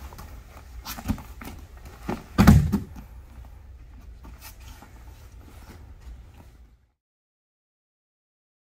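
A body landing on the grappling mat with a heavy thud about two and a half seconds in, as the sweep takes the partner down. Lighter knocks and scuffs of hands and feet on the mat come before and after it.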